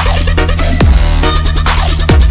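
Indonesian 'jedag jedug' DJ remix, electronic dance music with a heavy, full bass, and a deep bass hit that falls sharply in pitch about a second in.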